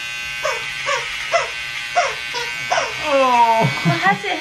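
Electric beard trimmer buzzing steadily as it cuts through a thick beard, pulling at the hairs. Over it come a quick run of short, high, falling whimpering cries and then a longer falling whine near the end.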